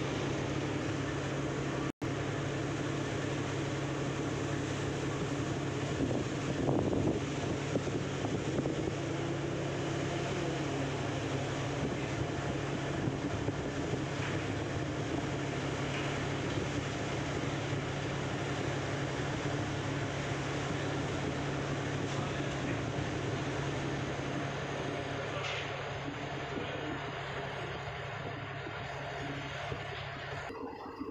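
Steady low drone of a river passenger launch's engine while underway, under a constant wash of wind and water noise.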